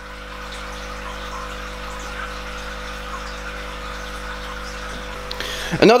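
Steady hum with a soft even hiss from running aquarium equipment such as a filter or pump, holding unchanged throughout.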